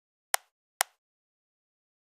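Two sharp computer mouse clicks about half a second apart, with dead silence around them.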